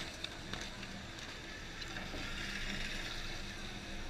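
Quiet, steady outdoor background noise with a faint low hum and a few light ticks, and no close engine or motor standing out.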